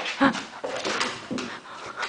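Golden retriever whimpering in a quick series of short, loud whines while staring up at a bug on the wall.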